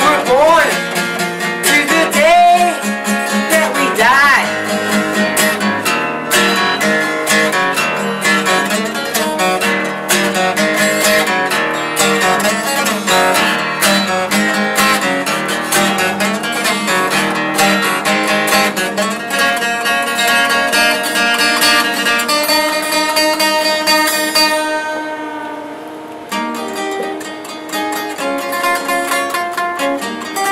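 Solo acoustic guitar playing an instrumental break of a folk song, with steady picked and strummed chords. A held sung note trails off in the first few seconds, and the playing softens briefly near the end.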